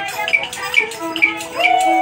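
Traditional Vietnamese Huế chamber music: a two-string fiddle (đàn nhị) holds long notes while a moon lute (đàn nguyệt) and a zither (đàn tranh) pluck a steady beat, about two sharp plucks a second. A higher held note comes in near the end.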